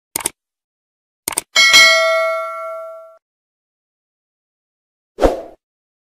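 Subscribe-button animation sound effects: a mouse click, then two quick clicks and a bright bell ding that rings out for about a second and a half. A short thump comes near the end.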